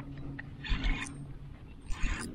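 Two short splashes of water beside the kayak, the first about two-thirds of a second in and the second near the end, over a faint steady low hum.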